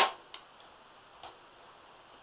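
Quiet room tone after the last word trails off, with two faint brief clicks, one about a third of a second in and one a little over a second in.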